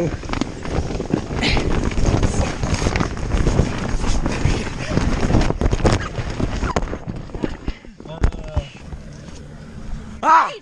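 Jumbled tumbling noise from inside an inflatable bubble soccer ball rolling down a hill: the plastic shell crumples, flaps and knocks against the ground over and over. It dies down after about seven and a half seconds.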